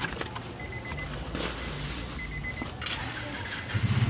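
Bubble wrap and plastic packaging crinkling and rustling in a few short bursts as an LED light panel is unwrapped, over a low steady hum.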